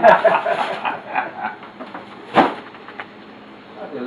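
Laughter trailing off, then a single sharp knock a little past halfway, followed by faint steady kitchen background sound.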